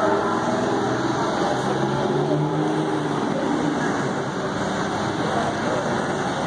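Diesel engine of a Crown Supercoach school bus running with a steady low drone, its pitch holding for a moment about two seconds in.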